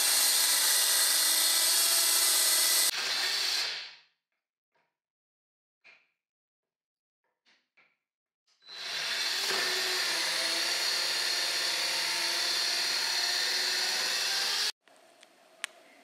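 Parkside cordless mini circular saw cutting through old wooden chair legs: a steady run whose note changes about three seconds in before the blade winds down about a second later. After a pause with a few faint taps, the saw starts again for a second cut of about six seconds that stops abruptly near the end.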